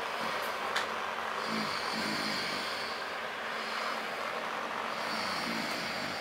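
A man snoring while asleep: slow breaths swelling every few seconds over a steady hiss.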